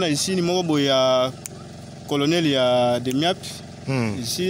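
A man's voice speaking, in phrases with short pauses between them.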